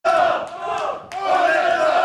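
A group of football players shouting together in unison: two long, loud shouts with a short break about a second in.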